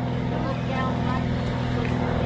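Steady drone of light propeller aircraft engines overhead, one unchanging pitch, with faint voices under it.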